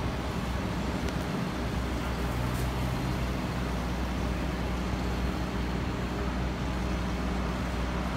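City street traffic: a steady wash of vehicle noise with a low engine hum underneath.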